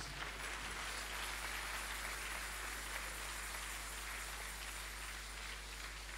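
Congregation applauding: a steady round of many hands clapping that slowly dies down toward the end.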